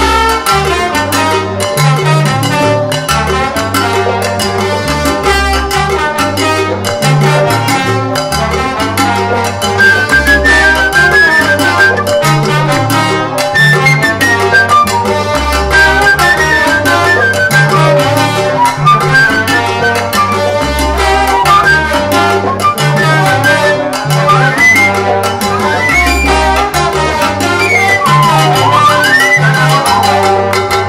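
Salsa band playing an instrumental passage: a repeating bass line under percussion, with a horn melody that bends in pitch in several glides near the end.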